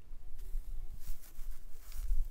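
A low rumble on the microphone, with faint rustling over it.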